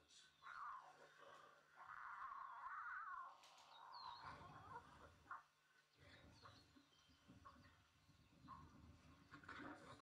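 Faint animal calls, with a few short high chirps.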